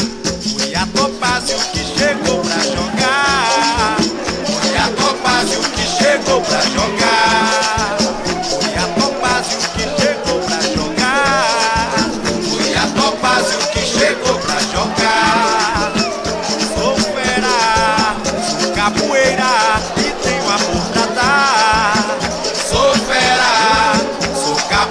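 Singing in repeated short phrases over a shaker rattling steadily in rhythm.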